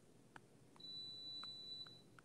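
A faint, steady high-pitched electronic beep, one unbroken tone lasting just over a second and starting a little before the middle, with a few faint ticks around it.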